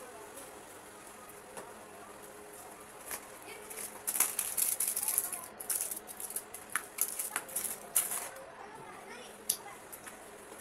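Crinkling and crackling of a plastic medicine wrapper being handled and crumpled, a dense run of sharp crackles in the middle, with a few separate clicks of small glass vials and ampoules set down on a wooden table.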